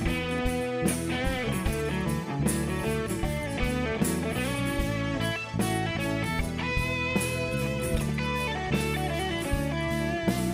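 Live band instrumental passage with no singing: an electric guitar lead with notes that bend and waver in pitch, over bass guitar and drums.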